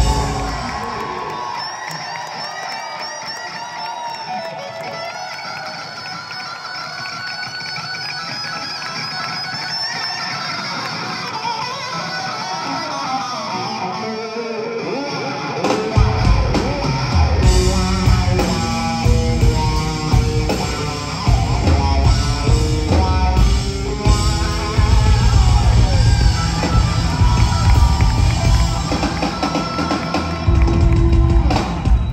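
Electric guitar solo on a Les Paul-style guitar through a loud amp, played alone for about the first half. The bass and drums come in heavily about sixteen seconds in, and the full rock band plays on under the guitar.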